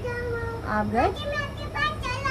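A young child talking in a high, sliding voice, with a steady low hum underneath.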